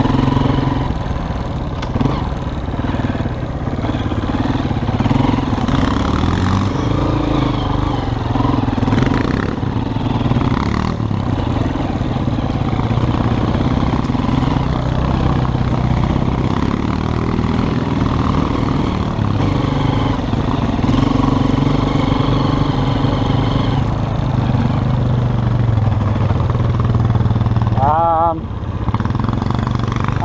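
Honda CRF230F dirt bike's single-cylinder four-stroke engine running under the rider as it is ridden along a trail, the throttle rising and falling. Near the end the engine sound drops as the bike slows to a stop.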